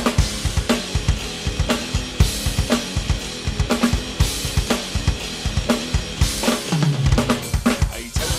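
Electronic drum kit played in a steady driving beat of bass drum, snare and cymbals, with a fill of hits falling in pitch near the end.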